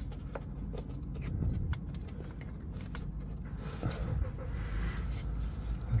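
A few faint clicks as the plastic wiring connector is pushed onto a BMW E46 coolant level sensor, over a steady low rumble.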